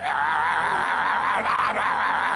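A man's single drawn-out scream, held at an even loudness with a warbling, wavering pitch.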